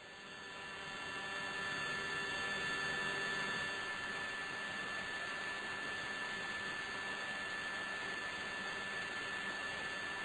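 A steady hiss of recording noise with a faint electrical hum and a thin high whine, fading in over the first two seconds and then holding at a low level.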